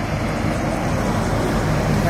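Steady rumble of motor vehicle noise.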